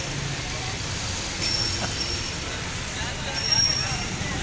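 Busy street ambience: a steady low rumble of road traffic with background voices of a crowd. A thin high-pitched tone sounds twice.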